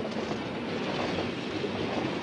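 Freight train of loaded coal hopper wagons rolling past, a steady rumble of wheels on rail.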